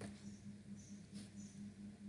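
Quiet background: a low steady hum with faint hiss.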